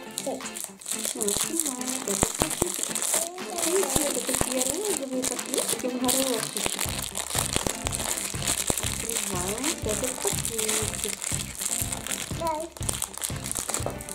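Shiny plastic foil packet from an L.O.L. Surprise! ball crinkling as it is handled, over background music; a steady beat comes in about halfway.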